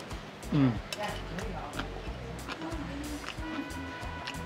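A short, appreciative 'mm' from a man eating, then soft background music with held tones.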